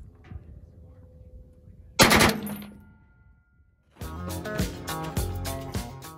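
A short burst of a few shots from a 1918 Colt Vickers water-cooled machine gun converted to fire .45-70, about two seconds in, its echo dying away over the next second or so. Music starts about four seconds in.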